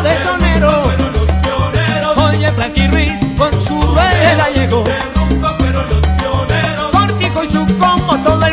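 Salsa music, an instrumental passage with no vocals, driven by a rhythmic bass line under a full band.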